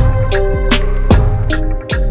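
Background music with a steady drum beat, about two to three hits a second, over held bass and chord notes, with a brief drop-out near the end.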